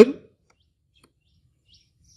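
A single short shouted command at the very start, then near silence. A small bird's short, high chirps begin faintly near the end.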